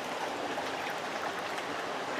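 Steady rushing hiss of a nearby creek's flowing water, even and unbroken.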